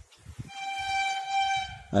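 A long, steady horn blast on one pitch, entering about half a second in and swelling a little, still sounding as speech resumes.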